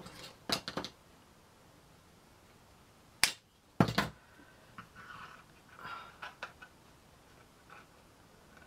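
A few short, sharp clicks and taps from small tools and card being handled on a wooden craft table. A quick cluster comes about half a second in, and the two loudest come about three and four seconds in, as a pair of scissors is picked up.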